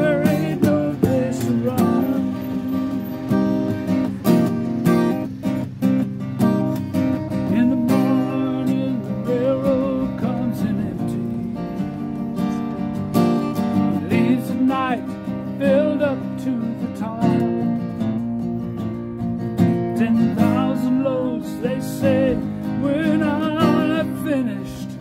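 Acoustic guitar strummed in a steady rhythm, with a man's voice singing over it at times.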